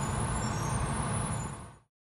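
Steady rumble of a Tokyo Metro subway train running, heard inside the car, fading out near the end.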